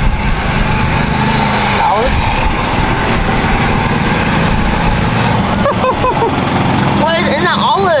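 A small engine running steadily at idle, a low, even hum under brief voices.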